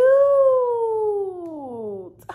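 A woman's voice holding one long, drawn-out "ooh" that slides steadily down in pitch and fades toward the end.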